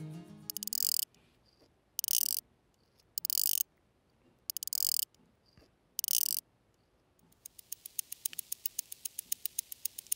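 Luch One Hand mechanical watch being wound by its crown: five short bursts of ratchet clicking, one for each turn. From about seven seconds in, the movement ticks evenly at about six beats a second, its 21,600-vibrations-per-hour rate.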